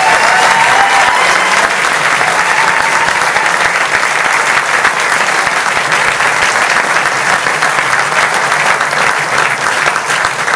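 Concert audience applauding steadily and loudly at the end of a brass band piece.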